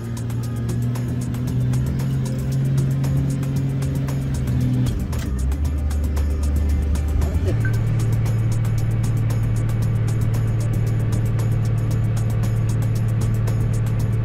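Snowplow engine heard from inside the cab, a steady low drone that drops in pitch about five seconds in and rises again a couple of seconds later, with background music over it.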